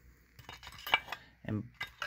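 Light clicks and clinks of small chainsaw parts knocked against a metal casting as they are handled, a quick run of taps about half a second to a second in.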